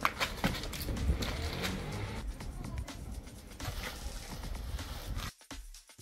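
Background music over outdoor noise and low wind rumble on the microphone, with a sharp knock right at the start and scattered clicks and rustling as a hatchback's boot is opened and searched.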